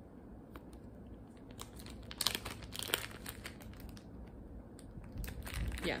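Clear plastic zip-top sample bag of wax melts crinkling and rustling as it is handled and opened by hand, with scattered small crackles and clicks, busiest about two to three seconds in.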